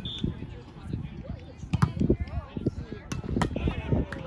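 Volleyball rally on grass: several sharp slaps of hands and arms striking the ball, the loudest about two seconds in and again near the end, amid players' shouts and background voices.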